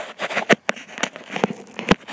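Handling noise on a handheld camera's microphone: several sharp clicks and knocks, the last one near the end being the loudest, over a steady hiss.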